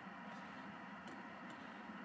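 Quiet car-cabin background with a few faint ticks about a second in.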